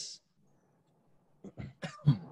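A man clears his throat with a short cough near the end of an otherwise near-silent pause, just after the hiss of a word ending.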